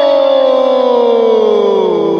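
DJ siren-style sound effect played through the sound system: one long, loud electronic tone gliding steadily down in pitch.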